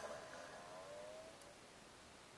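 A motor vehicle that has just sped close past on the road, its engine note fading as it drives away over about a second and a half.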